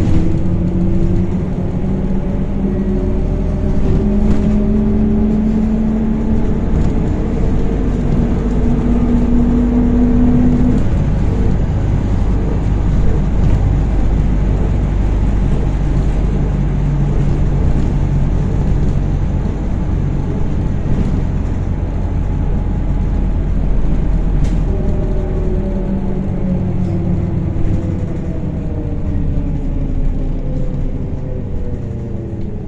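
Inside a MAZ-103T trolleybus under way: steady road and body rumble, with the electric traction motor's whine rising in pitch as the trolleybus picks up speed over the first ten seconds or so, and a whine changing pitch again near the end.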